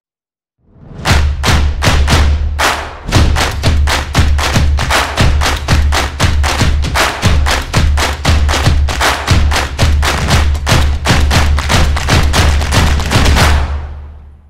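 Music with a heavy bass line and fast, regular percussive hits, coming in about a second in and fading out near the end.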